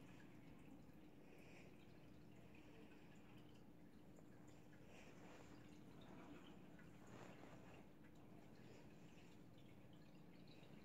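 Near silence: room tone with a faint steady hum and a few faint soft rustles.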